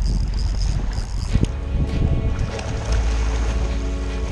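Wind buffeting the microphone, with background music with sustained tones coming in about a second and a half in.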